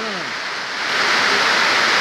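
Rain falling, a steady hiss.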